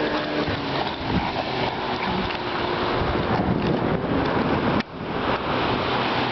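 Wind rushing over the microphone, mixed with surf breaking on the beach: a steady, loud, noisy roar that dips briefly about five seconds in.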